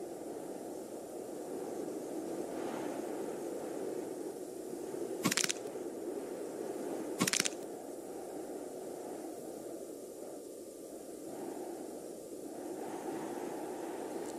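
Sound effects of a 3D-animated fight: a steady ambient noise with two sharp cracks, the first about five seconds in and the second about two seconds later.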